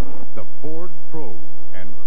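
Steady electrical hum from a VHS tape recording of a TV broadcast, under a voice on the soundtrack.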